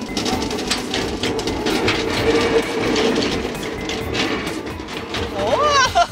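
Small amusement-park ride train rolling along its narrow-gauge track: a steady rumble with many quick clicks from the wheels on the rails.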